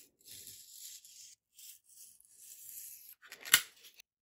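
Two long scraping strokes of a tool drawn across a thin white foam sheet, then a single sharp knock near the end.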